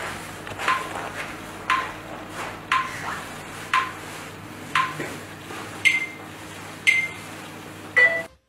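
Short electronic blips, about one a second, each a quick downward sweep that settles on a brief tone. The last three are pitched higher. A faint steady hum runs underneath.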